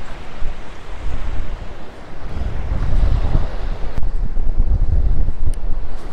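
Gusty wind buffeting the phone's microphone in uneven surges over the steady wash of rough surf breaking on a coral-rubble beach.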